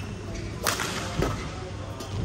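Badminton racket striking a shuttlecock in a rally: one sharp crack about two-thirds of a second in, followed by a fainter hit about half a second later.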